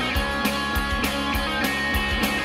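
Rock music with guitar over a steady drum beat.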